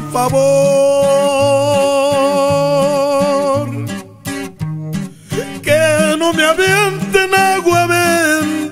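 Norteño corrido music from a band: a long held melody note over an alternating bass line, a brief stop-time break about halfway through, then quicker melodic runs.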